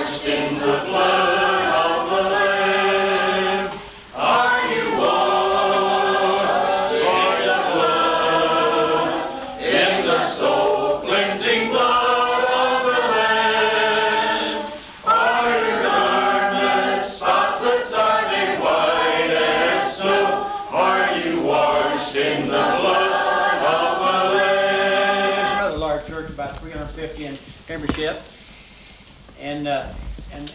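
A group of people singing together in long held phrases, with short breaks about every five seconds. The singing stops about four seconds before the end.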